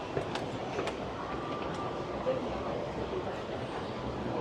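Moving escalator running steadily, with a few light clicks within the first second. Indistinct voices of people nearby sit in the background.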